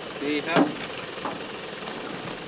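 A man's short call, then a sharp knock about half a second in and a fainter one a little later, over steady outdoor background noise.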